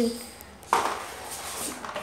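A vacuum cleaner being handled: one sharp clatter of hard parts about two-thirds of a second in, then a fainter knock near the end.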